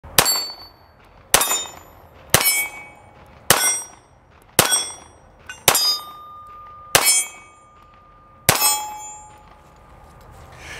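Walther PD380 .380 ACP pistol fired eight times at a steady pace of roughly one shot a second, each shot followed by the ringing clang of a steel target being hit; the last shot comes after a slightly longer pause.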